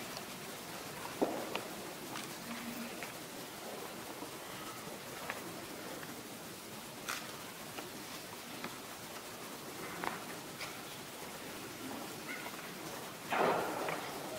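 Quiet church room tone with scattered faint clicks and rustles, and a louder brief rustle near the end.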